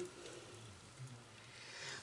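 Near silence: faint room hiss, with a slight soft sound about a second in.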